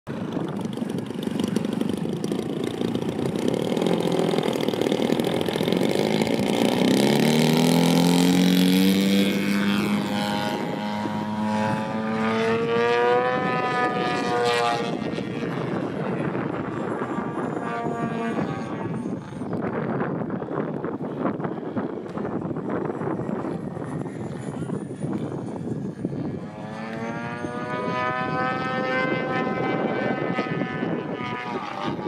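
Extreme Flight Extra 300 LX radio-controlled aerobatic plane taking off and flying. Its motor and propeller are loudest in the first several seconds, then rise and fall in pitch as the throttle changes, with upward sweeps about halfway through and again near the end.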